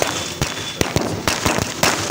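Firecrackers going off in a rapid, uneven string of sharp bangs, about eight in two seconds.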